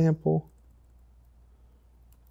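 A man speaks briefly at the start, then faint typing on a computer keyboard.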